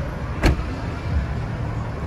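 A car's low, steady rumble, with one sharp click about half a second in.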